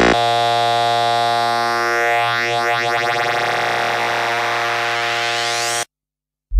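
Psychedelic trance breakdown: the kick-driven beat drops out and a sustained synthesizer chord holds, with rising sweeps gliding up through it. It cuts off abruptly near the end into a brief silence.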